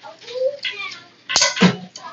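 Leatherman Surge multitool being handled, with faint metal scraping as a tool is swung out, then a single sharp click about a second and a half in as it locks in place.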